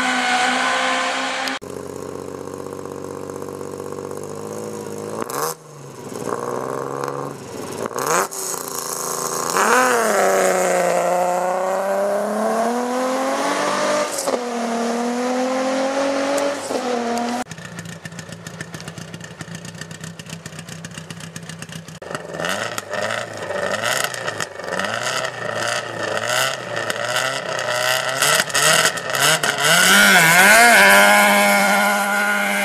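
Rally cars accelerating hard away from a stage start one after another, engines revving up and dropping through gear changes. Near the end an engine runs at the start line, throbbing unevenly with repeated throttle blips.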